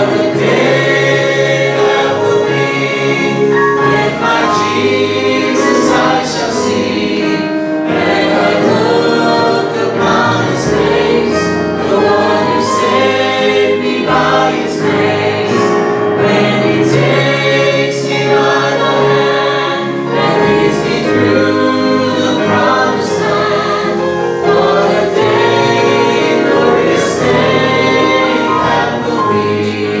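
Live gospel song: a small group of men and women singing together into microphones, backed by guitars and keyboard, at a steady, full level throughout.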